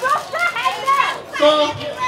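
Several people in a crowd calling out at once, their voices overlapping without clear words.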